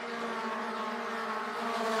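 Mazda MX-5 Cup race cars' engines running at speed on track, a steady engine note that grows a little louder toward the end as the cars come closer.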